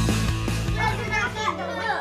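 Background music, with children's excited voices and shouts coming in a little under a second in.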